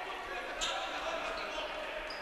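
Sports hall ambience during a stoppage in a basketball game: a steady low background of a sparse crowd and faint voices echoing in the hall, with no clear ball bounces.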